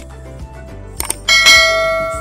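Subscribe-button sound effect: mouse clicks, then a bell ding about halfway through that rings on and slowly fades.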